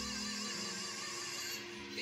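Music from a television broadcast of a sung stage performance: held notes with a wavering vibrato over accompaniment.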